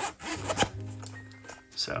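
Zipper on a zippered fabric pen case being pulled open in short rasping strokes, over soft background music.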